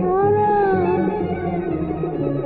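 Old Egyptian popular song recording: one long held melodic note that rises slightly and then falls away, lasting about a second and a half, over the accompaniment's low notes.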